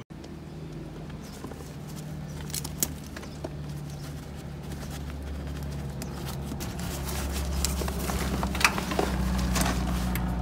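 Nylon backpack straps, buckle and mesh pocket being handled, giving scattered short clicks and rustles. Under them a steady low mechanical hum grows gradually louder.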